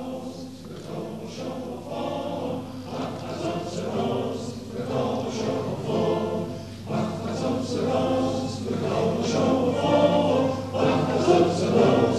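Male choir singing a Rosh Hashanah liturgical piece, growing louder in the second half.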